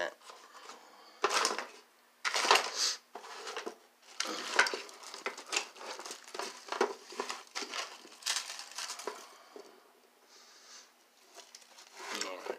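Close handling noise: irregular clicks, knocks and rustling as small objects are moved about next to the phone's microphone, with a few brief pauses.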